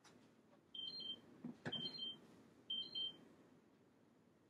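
Three electronic beeps about a second apart, each a quick pair of high tones, from a device being handled, with a light knock just before the second beep.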